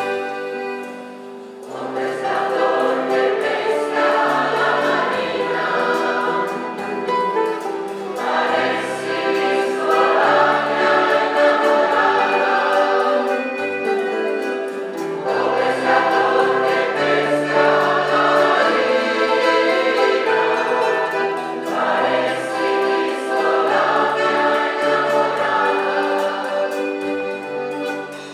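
Large mixed choir singing an Italian folk song with a folk band accompanying, in phrases of about seven seconds with a brief dip between each.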